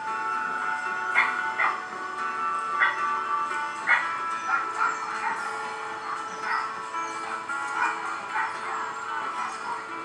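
Background music with dogs barking now and then from the shelter kennels.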